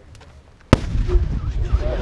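A detonator rigged to a chair goes off with a single sharp bang about two-thirds of a second in, followed by a loud low rumble as the blast wave passes. Voices start reacting near the end.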